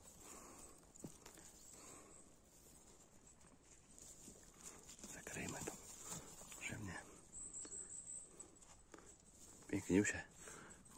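Faint rustling of moss and pine litter as a porcini mushroom is twisted and pulled out of the ground. A low voice murmurs briefly twice around the middle.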